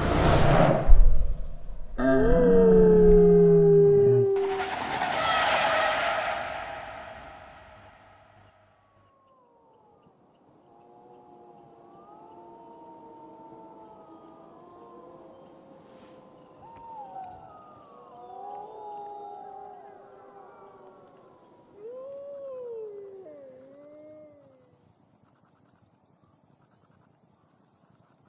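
A loud burst of noise in the first seconds, fading out; then, after a short quiet gap, several animals howling faintly and overlapping, their calls rising and falling.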